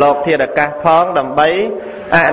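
A Buddhist monk's voice preaching in Khmer in a sing-song, chant-like cadence, with some syllables drawn out in gliding pitch.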